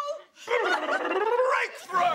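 A woman's high, wordless shrieks and whoops of excitement, sliding up and down in pitch. Audience applause breaks in right at the end.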